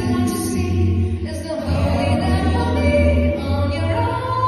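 A cappella vocal ensemble singing held chords, with a low bass voice running steadily underneath and no instruments.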